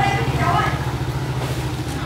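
Motorcycle engine idling steadily, a low even hum, with voices talking over it in the first half-second or so.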